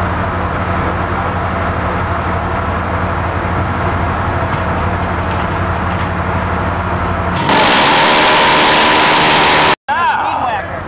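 A steady low machinery hum, then about seven seconds in the Phalanx CIWS 20 mm Gatling gun fires one burst of a little over two seconds, a loud continuous buzz at a very high rate of fire that cuts off suddenly.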